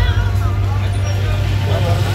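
Street sound: people talking over a steady low hum.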